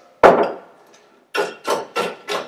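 Ice cubes in a glass tumbler being crushed with a hand-held utensil: one loud knock, then, from about a second and a half in, repeated sharp strikes about three a second.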